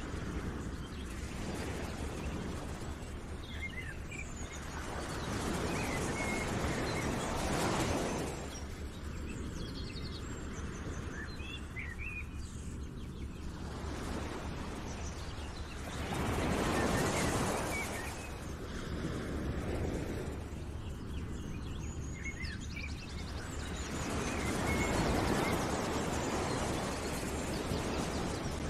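Outdoor nature ambience: a rushing noise that swells and fades three times, with faint, scattered bird chirps.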